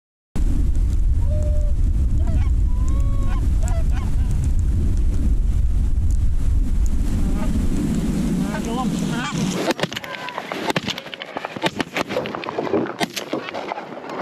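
Wind rumbling on the microphone, with faint goose honks over it; about nine and a half seconds in the wind drops away and a crowd of Canada goose honks takes over, many calls overlapping.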